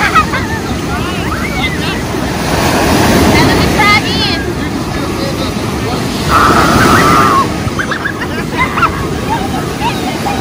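Ocean surf breaking and washing in, with wind buffeting the microphone. High voices call out over it several times, the longest and loudest held call about six seconds in.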